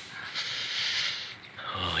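A person breathing out heavily close to the microphone, a hissing breath lasting about a second, then a short "oh" near the end.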